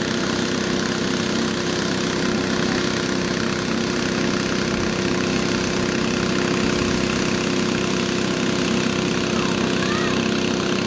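A small motor running steadily, making a constant droning hum with an unchanging tone.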